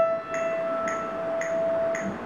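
Yamaha upright piano, one note held and ringing for about two seconds while a few soft notes sound over it about twice a second.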